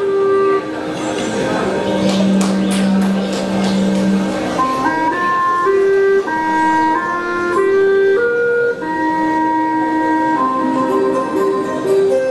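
A long bamboo transverse flute, the Vietnamese sáo, playing a slow melody of held notes stepping up and down, picked up close on a handheld microphone.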